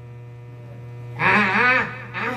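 Steady low electrical mains hum from the public-address sound system. About a second in, a man's voice comes through it briefly, and this is the loudest sound.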